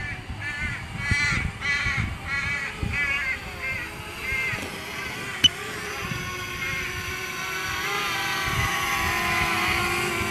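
A crow cawing about eight times in quick succession, then a single sharp click. A quadcopter drone's propeller hum grows louder toward the end as the drone descends to land.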